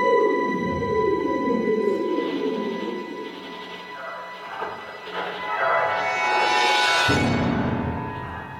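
Symphony orchestra playing contemporary music mixed with electronic sounds: a steady high tone holds throughout while falling glides sweep down in the low register over the first few seconds. The music swells to a bright peak, then a deep low sound enters suddenly about seven seconds in.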